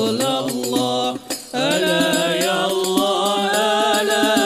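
Devotional Arabic qasidah sung to hadroh frame-drum accompaniment, the singing breaking off for a moment a little over a second in, then picking up again.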